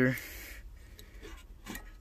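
Faint handling noises, a hand rubbing against wiring and a metal bracket with a few light clicks, over a low steady hum.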